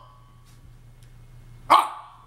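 A man's single short, loud yelp-like exclamation near the end, after a stretch with only a low steady hum.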